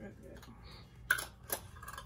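Two sharp clicks about a second and a half second apart as a small cosmetic jar and its packaging are handled, under a woman's speech.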